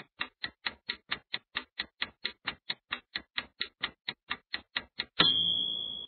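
Countdown-timer clock-tick sound effect: fast, even ticks, about four and a half a second. A little after five seconds it ends in a single ringing chime that marks time up.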